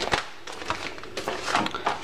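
Plastic parts bag and paper mailer envelopes being handled and set down on a counter, giving a few short crinkles and rustles, most of them in the second half.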